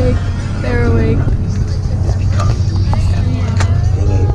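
Steady low rumble of a coach bus's engine and road noise heard inside the cabin, with voices over it.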